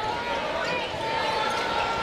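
Live arena sound of a basketball game: a basketball bouncing on the hardwood court over a steady crowd din.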